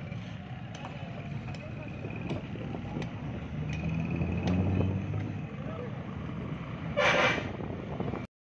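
Busy market-street traffic: motor rickshaw and motorcycle engines passing, with voices in the crowd. A louder engine passes about halfway through, and a short, loud horn toot sounds near the end.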